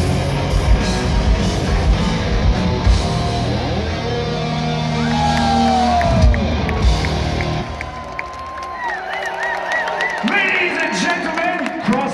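Live heavy metal band with distorted guitars and drums playing the final bars of a song, breaking off about two-thirds of the way through. The crowd then cheers, shouts and whistles.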